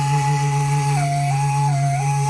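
Sybyzgy, the Kazakh long end-blown flute, playing a küi: a held high note that twice dips briefly a step lower, over a steady low drone hummed by the player.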